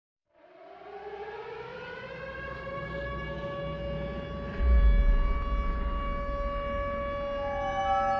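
A siren-like wail that winds up in pitch over about two seconds and then holds a steady note, with a deep boom about halfway through that lingers as a low rumble.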